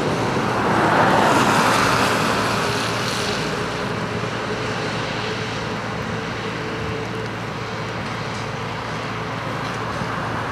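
Road traffic on wet asphalt: a vehicle passes about a second in, its hiss swelling and fading over a couple of seconds, then a steady traffic rumble.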